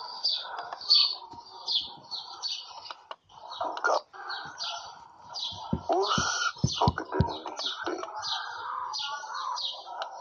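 Birds chirping over and over in short calls, with a quick run of low thumps a little past the middle.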